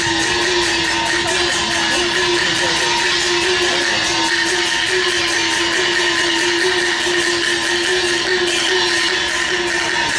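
Chinese traditional orchestra accompanying Taiwanese opera, playing a long held note over a fast, even pulse.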